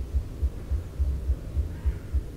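Wind buffeting a clip-on microphone: irregular low rumbling thumps, several a second.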